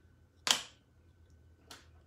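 A small paint jar set down on a table: one sharp clack about half a second in, then a fainter click near the end.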